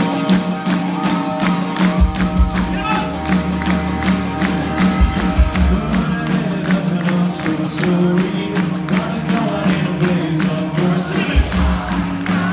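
Live rock band playing loud: electric guitar and drum kit keep a steady beat of about three hits a second. A singer's voice comes in over it at times.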